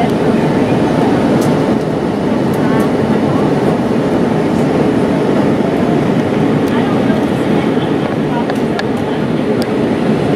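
Steady engine and airflow noise inside a jet airliner's passenger cabin in flight, an even rushing hum that holds constant throughout.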